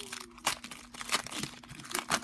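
Foil wrapper of a 2020 Panini Select football card pack crinkling and tearing as it is peeled open by hand, with sharp crackles about half a second in and again just past a second.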